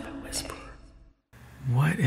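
The tail of an intro tune fades out, then a moment of dead silence. Soft-spoken, near-whispered speech begins about a second and a half in.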